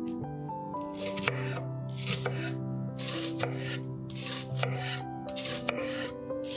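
Chef's knife slicing through a peeled onion on a wooden cutting board: a crisp cut and a knock on the board, repeated about once or twice a second, starting about a second in.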